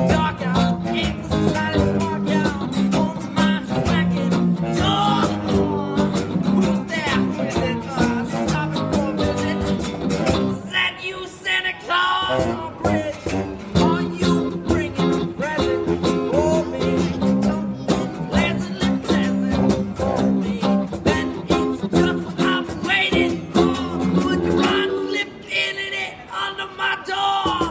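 Small band playing an instrumental break: a saxophone lead over electric guitar, acoustic guitar and a cajon keeping a steady beat. The lower parts drop out for a few seconds near the middle, then the full band comes back in.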